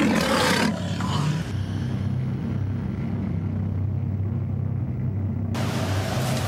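A low, steady rumbling drone, with a louder, noisier full-range sound at the start and again just before the end.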